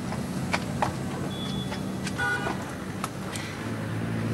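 Street background: a vehicle engine running with a steady low hum, with a few sharp clicks and a brief high-pitched sound about two seconds in.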